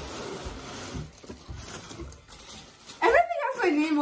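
Paper and tissue paper rustling as hands dig into a cardboard box and pull out the packing, with a few soft knocks. About three seconds in, a drawn-out excited exclamation, falling in pitch, takes over.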